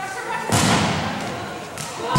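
Broomball play on an indoor rink: a sharp thud about half a second in, echoing through the arena, amid players' voices calling out.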